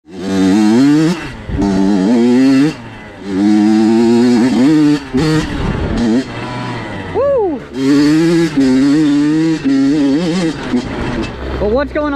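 Two-stroke Honda CR85 dirt bike engine, an 85 cc single, running hard on a trail. The throttle opens and closes repeatedly, so the engine note climbs, holds and drops several times, with one quick rev blip about 7 s in.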